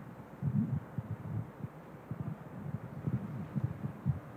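Faint, irregular low thumps and rustles of microphone handling noise, as a handheld microphone is picked up and moved.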